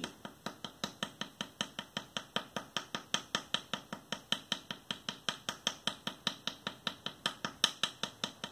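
Light, rapid tapping of a small wooden paddle against a hollow clay sphere, in an even rhythm of about five taps a second. The clay is being paddled to compress it and refine the shape of the joined form.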